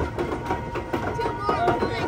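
Voices and chatter of raft riders over the steady low rumble of a river-rapids raft riding up a roller-conveyor lift, with a thin steady tone running underneath.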